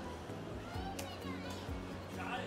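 Background music with steady held bass notes, with a brief high-pitched voice, like a child's, about a second in.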